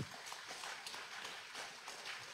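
Faint footsteps and shuffling over a steady hiss, with a few soft ticks scattered through it.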